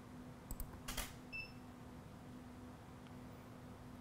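Canon DSLR shutter firing for a tethered shot: a faint click about half a second in and a sharper one at about a second, followed shortly by a brief high beep. A faint steady hum underneath.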